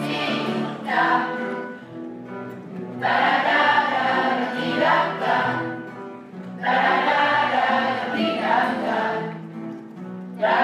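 A mixed choir of boys and girls singing together over instrumental accompaniment, with sung phrases coming in about a second in, again at three seconds and near seven seconds.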